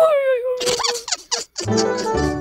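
Cartoon sound effects: a squeaky wordless character voice held and sliding slightly down in pitch, then a run of short crackling chirps. A low synth chord of background music comes in near the end.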